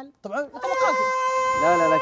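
A man's voice sings a long, high held note on one pitch, reached by a quick upward slide about half a second in. A lower male voice joins near the end.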